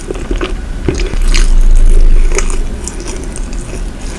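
Close-miked chewing of a flaky Nutella-filled croissant: scattered crisp crackles of the pastry layers and wet mouth sounds. A loud dull low rumble swells and fades between about one and two and a half seconds in.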